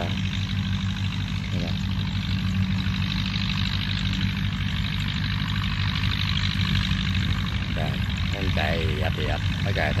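Massey Ferguson 185 tractor's diesel engine running steadily, a low even drone with no change in pitch. Faint voices come in near the end.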